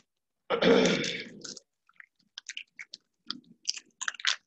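A person clearing their throat close to the microphone about half a second in, a loud burst that fades over about a second. It is followed by scattered faint mouth and lip clicks.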